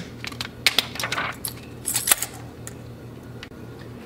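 A quick run of small clicks and rattles from handling the black plastic film reel and developing tank, dying away about two seconds in, over a steady low hum.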